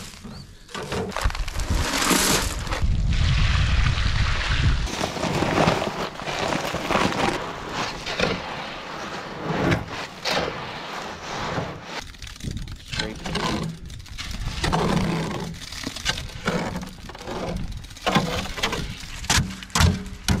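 Wet concrete being mixed with a rake in a metal wheelbarrow: gravel and cement scraping and sloshing against the tray in uneven strokes. A heavy low rumble runs through the first few seconds.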